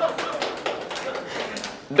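Audience laughing in response to a joke, with scattered claps and taps through the laughter.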